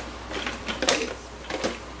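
Light clicks and taps of a plastic RC drift car body being handled and set down on a concrete floor: a few sharp ticks, the loudest about a second in.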